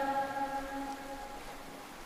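The reverberant tail of a Quran reciter's held note in melodic recitation, fading away over about a second and leaving only faint hiss before the next phrase.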